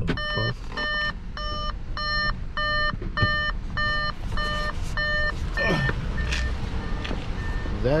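Audi A4 warning chime beeping repeatedly, about two beeps a second, as the driver's door is opened with the ignition still on. The beeps grow fainter and sparser after about six seconds.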